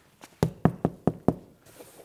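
Knuckles knocking on a flat sun prop, as at a door: a quick run of about five knocks, roughly five a second, starting about half a second in.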